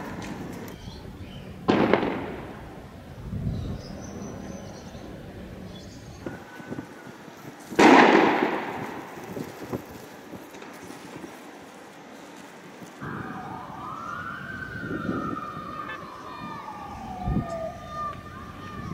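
Two loud bangs about six seconds apart, the second the louder, each trailing off over about a second, typical of riot-control fire in a street clash. Later a siren rises and falls for a few seconds.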